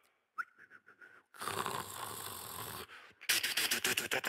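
A man beatboxing into a microphone, sketching the opening of a music cue with his mouth. There is a short whistled note, then a long breathy rushing hiss, then a fast run of sharp clicks near the end.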